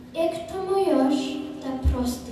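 A high-pitched voice singing, with notes held about half a second and gliding between them; a short low thump near the end.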